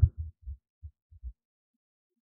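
A pause in the narration holding about six faint, very low thumps at irregular intervals over the first second and a half.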